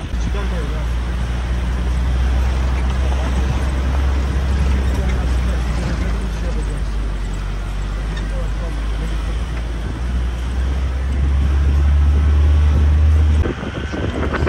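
A moving vehicle's steady low engine drone and road noise, rising in level about two-thirds of the way in and cutting off suddenly just before the end.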